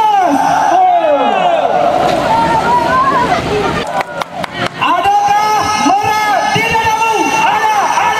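A loud, high-pitched voice in long, arching notes, over crowd babble. A short run of sharp clicks and dropouts cuts in about four seconds in.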